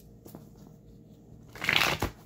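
A thick stack of paper index cards being riffled and shuffled by hand: a few soft card clicks, then a loud half-second flutter of cards near the end.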